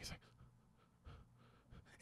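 Near silence with a man's faint breaths during a dramatic pause in speech.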